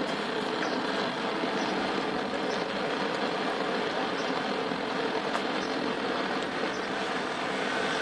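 Vintage East German 'Bat' gasoline blowtorch burning with a steady, even rushing hiss from its pump-pressurised flame, with a few faint ticks.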